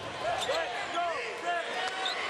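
Basketball shoes squeaking on a hardwood court in several short chirps, with a basketball bouncing during live play.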